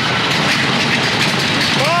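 Space Mountain roller coaster train running on its track in the dark, a loud, steady rumble and clatter.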